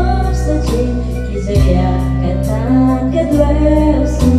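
Karaoke music with a woman singing into a microphone over a backing track with sustained bass notes.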